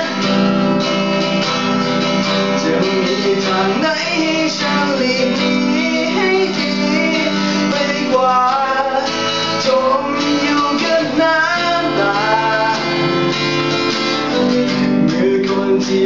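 Acoustic guitar strummed steadily under a man singing a slow Thai pop ballad.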